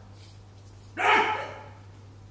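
A single short, loud vocal outburst about a second in, bark-like and pitched, over a steady low hum.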